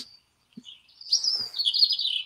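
A recording of a Eurasian blackbird singing, played back: one phrase of high warbled notes starting about a second in and ending in a quick twitter.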